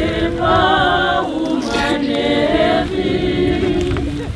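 A group of people singing together unaccompanied, several voices in harmony. The song goes in phrases, with short breaths between them about a second in and again near three seconds.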